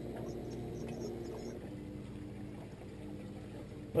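Boat motor running steadily at slow trolling speed, a low even hum whose note shifts slightly a little under halfway through.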